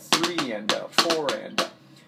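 Drumsticks striking a rubber practice pad on a snare drum in a triplet pattern, with the accented first note of each triplet played as a double stroke: the building exercise for the single drag rudiment. The strokes stop about three-quarters of the way through.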